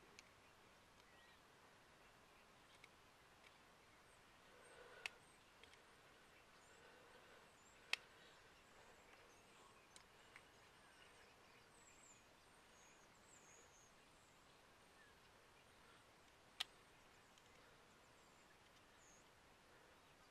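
Near silence broken by a few sharp clicks from a screwdriver working on a seven-pin trailer plug, with faint bird chirps in the middle.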